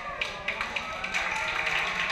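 A group of people clapping their hands in an uneven rhythm, with voices and some music underneath.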